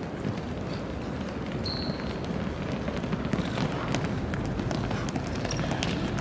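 A group of volleyball players' sneakers running and skipping on an indoor sports court: a steady, dense clatter of many footfalls, with a brief high squeak about two seconds in.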